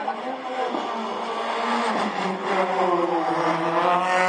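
Rally car engine approaching unseen, getting louder, its pitch climbing about two seconds in as it accelerates and then holding high.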